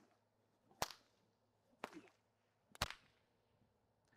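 Three sharp snaps about a second apart from the string of a horse-training stick swung overhead, cracking like a whip.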